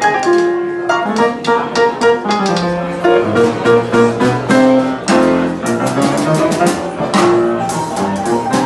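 Upright piano playing a fast boogie-woogie blues, a busy right hand over a repeating left-hand bass figure, loud and without a break.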